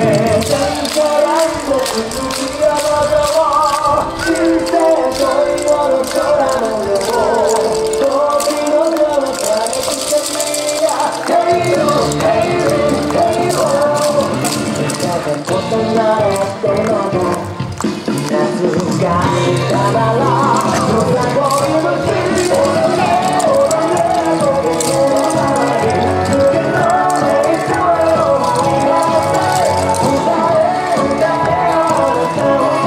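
Upbeat yosakoi dance song with a singing voice and a steady beat; the bass drops out for a few seconds around ten seconds in, then comes back.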